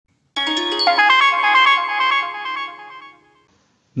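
Short electronic musical jingle: a quick run of bright pitched notes that starts just after the beginning and fades out by about three seconds in.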